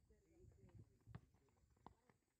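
Near silence with faint distant voices, and a couple of soft thuds from a football being kicked, the clearest near the end.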